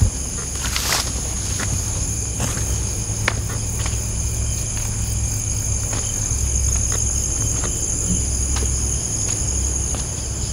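Steady high-pitched chorus of crickets and other night insects. Scattered footsteps and snaps of twigs and leaves sound as someone walks along a dirt path through undergrowth, over a constant low rumble.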